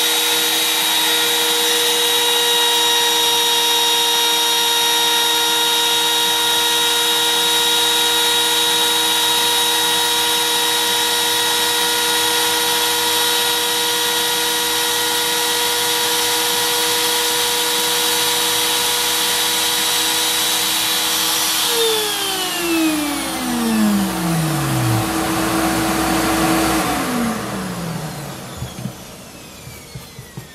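Bosch PMR 500 trim router cutting the saddle slot in an acoustic guitar's bridge, running together with a shop vacuum drawing off the dust: a loud, steady high whine over a rushing hiss. About three-quarters of the way through one motor is switched off and its whine slides down as it winds down, and the other does the same a few seconds later, leaving a few light clicks.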